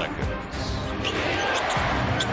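Arena crowd noise during a basketball game, with a basketball bouncing on a hardwood court, under music.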